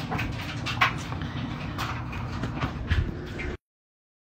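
Front-loading laundry machine running: a steady low hum with a few scattered knocks. The sound cuts out abruptly about three and a half seconds in.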